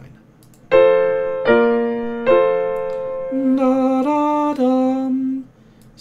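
Piano playing a three-chord tonic–subdominant–tonic (I–IV–I) progression, the chords struck about a second apart and left to ring. Then a man sings three sustained notes that step up and back down (sol–la–sol), matching the top voice of the chords.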